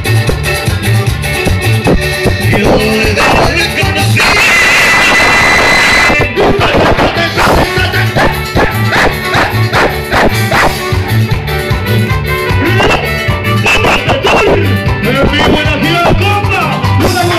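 Live cumbia band playing loudly over a PA, with a steady, even bass beat; about four seconds in the music thickens into a two-second sustained passage before the beat carries on.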